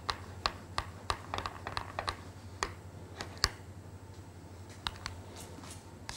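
A metal spoon clicking against a small glass bowl as sauce is stirred and scooped: a run of light, irregular clicks that thin out in the second half.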